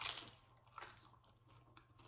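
A crisp bite into a fried rolled flauta, loudest right at the start, followed by a few soft crunches of chewing.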